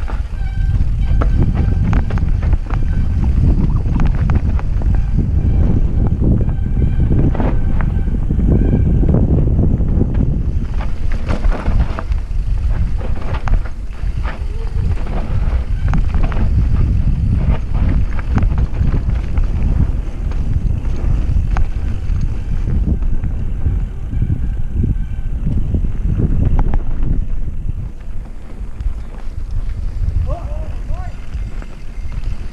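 Wind buffeting a mountain biker's action-camera microphone during a fast descent on dirt singletrack, a steady heavy rumble with the rattles and knocks of the bike over roots and rocks. It eases a little near the end.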